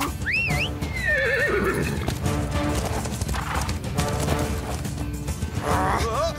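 A horse neighs near the start, a whinny that rises and then falls away over about a second and a half, with hoofbeats clip-clopping under background music.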